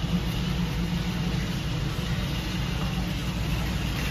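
Steady low rumble and hum of a warehouse store's background noise, with no distinct events.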